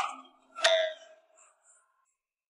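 Two short, bright clinking chimes, about two-thirds of a second apart, each ringing briefly before it dies away.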